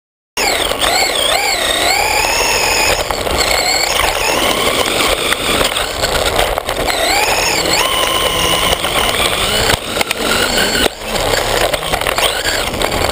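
Large-scale RC buggy's motor and drivetrain heard from an onboard camera: a whine that rises and falls in pitch with the throttle as it drives over grass, with a few knocks from bumps. The sound cuts in abruptly a moment after the start.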